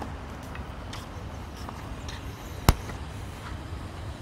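A single sharp knock of a tennis ball, about two and a half seconds in, over a steady low background rumble.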